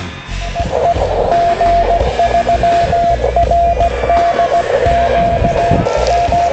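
Morse code (CW) from an amateur radio transceiver: a single steady tone keyed on and off in dots and dashes, over a band of receiver hiss.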